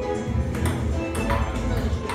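Table tennis ball clicking off bats and table in a rally, a few sharp hits over loud background music.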